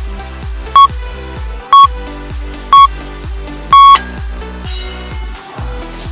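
Workout interval timer counting down: three short, high beeps a second apart, then a longer beep marking the end of the exercise. Background electronic dance music with a steady beat plays underneath.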